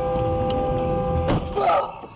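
Car crash: a sudden loud impact about a second and a quarter in as the dashcam car hits a sedan turning across its path, followed by a short burst of crunching and clatter before the sound drops away.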